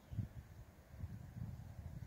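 Low, uneven rumbling on the microphone, with a bump just after the start and a busier stretch in the second half.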